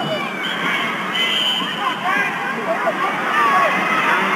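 Arena crowd noise: many voices shouting and calling out over one another, a steady hubbub.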